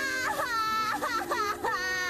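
A cartoon character's voice, a woman voicing a young pony, wailing and sobbing loudly: a long wail, a few short broken sobs, then another drawn-out wail near the end. A soft music underscore of held notes runs beneath it.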